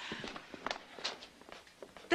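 Faint, irregular footsteps of a few people walking across a room.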